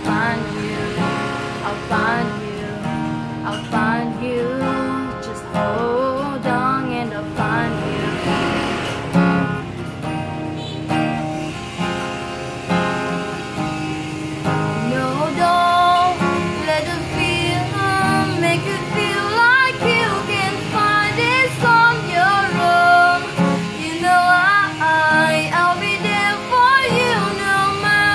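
Steel-string acoustic guitar, capoed, strummed and picked, with a woman singing the melody over it; her voice grows stronger and louder in the second half.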